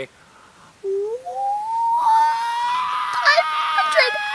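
A woman's voice draws out an excited, high "Ohhh": it rises in pitch about a second in, then holds one high note for about three seconds.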